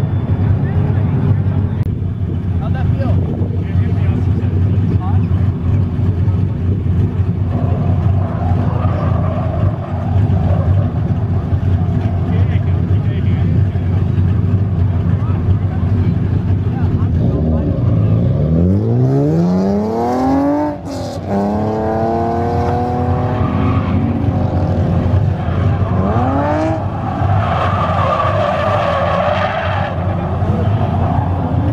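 Drift cars' engines running hard with tyre noise; about 18 seconds in, an engine revs up sharply to a sudden cut near 21 seconds, then climbs again, with another short rise in revs near 26 seconds. The later revving comes from an Infiniti G35 sedan's V6 as it drifts with its tyres smoking.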